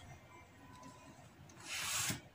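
Quiet at first, then a brief rubbing scrape on cotton print fabric near the end, as the fabric and ruler are handled on the table.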